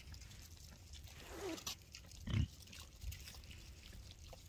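Dorper sheep calling: a short call a little after a second in, then a brief low call a little after two seconds, the loudest sound.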